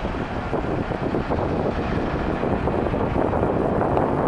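Steady outdoor airport apron noise: the even rush of distant jet engines and ground equipment, with wind on the microphone.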